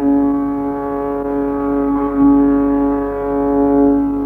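Carnatic violin holding one long, steady note without ornament, swelling briefly about two seconds in.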